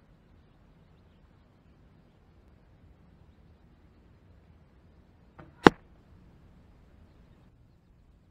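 An arrow shot from a homemade longbow striking the archery bag target once with a sharp, loud hit about five and a half seconds in, just after a faint click from the shot.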